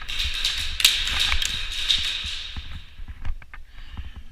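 A rapid stream of sharp taps and clatter for about three seconds, typical of airsoft fire with BBs striking an OSB plywood barricade, then a few scattered single hits near the end.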